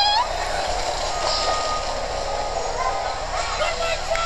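Steady outdoor background noise with faint voices. A high voice trails off right at the start, and a thin steady tone sounds for a second or two in the middle.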